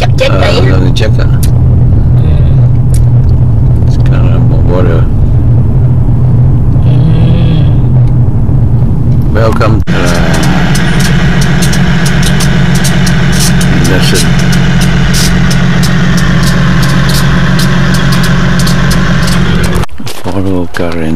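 Car heard from inside the cabin: a steady low rumble of engine and road noise while driving. About halfway through the sound changes abruptly to a different steady low hum with many small clicks.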